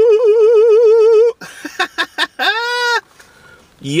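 A man's long, high whoop ('Woo!') held with a wavering vibrato, cutting off about a second and a half in. Then a few short clicks and a brief rising-and-falling vocal 'ooh'.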